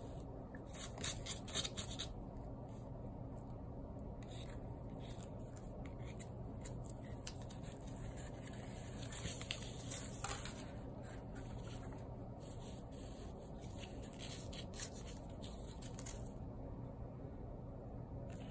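Faint rubbing and scraping of a plastic weaving needle and yarn being drawn over and under the string warp of a cardboard loom, with a few soft clicks about a second or two in and again near ten seconds, over a low steady hum.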